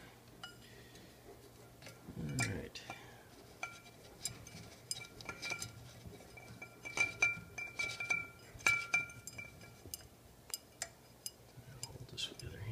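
A fluted glass light-fixture shade being handled, clinking again and again with sharp light knocks, and ringing with a steady high tone through the middle of the stretch. A brief voice sound comes about two and a half seconds in.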